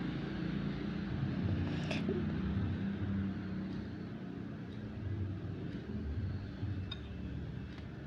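A metal spoon stirring thin glutinous-rice-flour batter in a ceramic bowl, soft and wet, over a steady low rumble; a light click about two seconds in.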